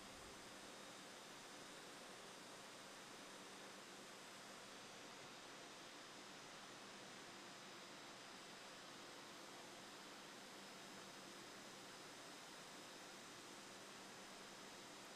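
Near silence: a faint steady hiss with a low hum.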